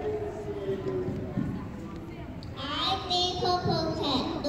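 Speech: young children's voices reciting, with one long drawn-out word in the first second and louder speaking from about two and a half seconds in.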